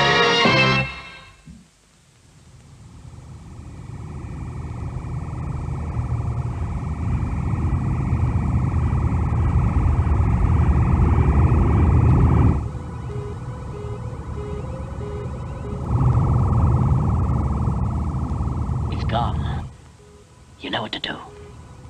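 Science-fiction spacecraft engine sound effect: a steady rushing drone with a hum that swells up over several seconds. It drops suddenly to a quieter layer with a regular pulsing beep, then swells again and cuts off just before the end. The closing theme music fades out about a second in.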